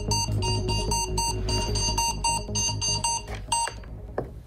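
Digital bedside alarm clock beeping, rapid repeated electronic beeps that cut off suddenly near the end as it is switched off.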